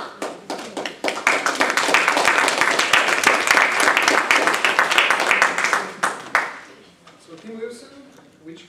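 Audience applauding, swelling about a second in and dying away after about six seconds.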